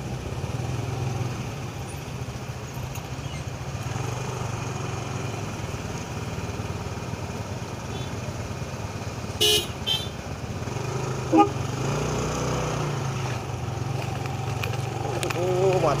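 Motor scooter engine running steadily at low revs, a low hum, while crawling in stop-and-go traffic. A little past halfway come two short vehicle horn toots, the loudest sounds here.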